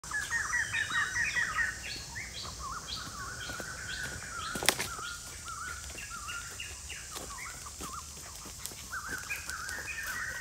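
Birds chirping and calling in quick warbling phrases, busiest in the first two seconds, over a steady high hiss. One sharp click about halfway through.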